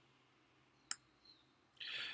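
A single sharp computer mouse-button click about a second in, as a click-and-drag selection is released, against otherwise near silence.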